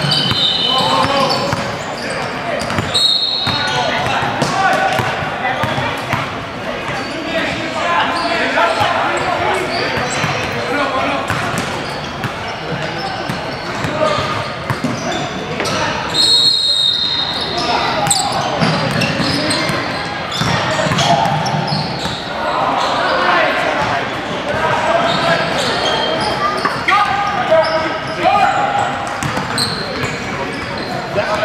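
Indoor basketball game in a large, echoing gym: players' and onlookers' voices and shouts overlapping, basketballs bouncing on the hardwood floor, and a few short high-pitched squeaks.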